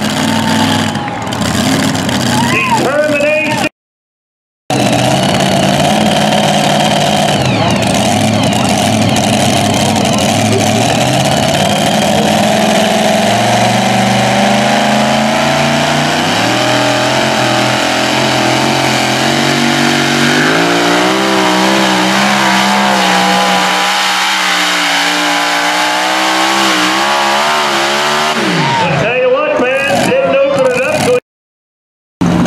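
Supercharged pulling truck's engine at full throttle during a pull, its pitch climbing in steps and then wavering up and down before dropping away near the end.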